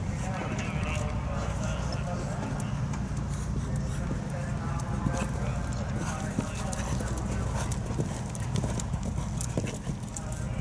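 A horse's hooves beating in a canter on sandy arena footing during a show-jumping round, over a steady low rumble, with voices in the background.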